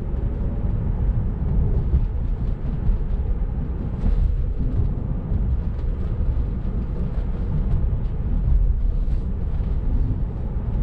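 Steady low road and tyre rumble inside the cabin of a 2018 Tesla Model 3, an electric car, cruising down a street.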